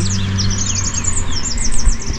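A small songbird singing fast runs of short, high chirps. Underneath, a steady low hum fades out in the first third, and a low rumble runs beneath.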